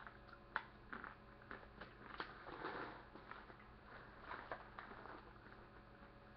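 A person chewing a mouthful of coconut P Nutties candy, heard as faint, irregular small clicks and crunches.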